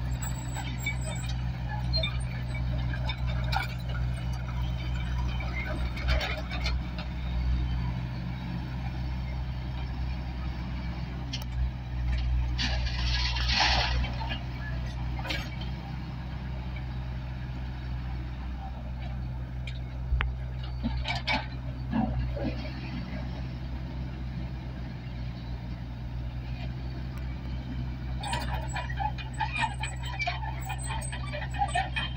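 Diesel engine of a Tata Hitachi backhoe loader running steadily under work, with the clatter of crushed stone as the front bucket scoops from the pile and tips into a truck; a louder burst of stone noise comes about halfway through.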